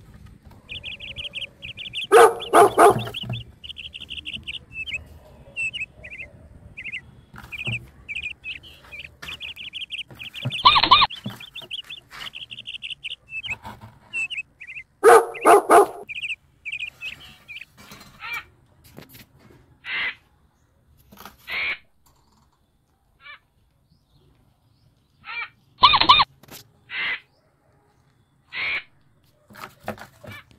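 Rapid high-pitched chirping and twittering from a small animal. The chirps come in quick runs through the first half and as separate single chirps later on. Louder, harsher calls break in about two seconds in, around eleven and fifteen seconds, and again about three-quarters of the way through.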